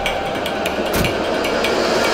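A car bonnet slammed shut about a second in, over background score music with a fast, even ticking percussion.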